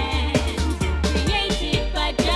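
Reggae record playing from vinyl, with a deep, heavy bass line under regular drum hits and a sliding melody line above.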